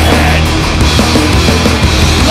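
Hardcore punk band playing loud and dense: distorted guitar, bass and drums driving through the song.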